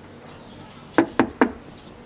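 Three quick knocks on a door, in close succession about a second in.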